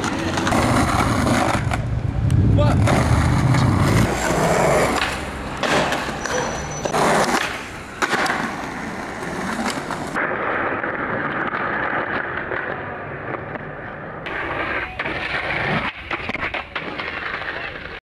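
Skateboard wheels rolling on concrete pavement, with several sharp clacks of the board hitting the ground.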